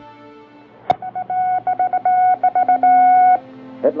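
A sharp click, then a run of short and long beeps on one steady pitch, sounding like Morse code telegraph signals, which stop about three and a half seconds in. Music sits underneath, with a low held tone joining near the end.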